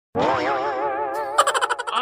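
Cartoon comedy sound effect: a warbling tone that wobbles evenly up and down for about a second, followed by a brief jangling burst near the end.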